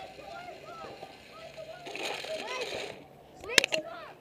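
Paintballs rattling as they are poured into the open loader on the paintball gun, in the middle of the clip, followed by two or three sharp snaps near the end. Distant shouting voices go on throughout.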